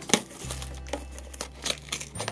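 Plastic wrap on a small cardboard toy box crinkling and tearing as fingers peel it off, with a few sharper crackles.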